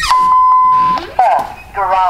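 A steady, single-pitched electronic beep lasting just under a second, followed by two short rising-and-falling vocal sounds.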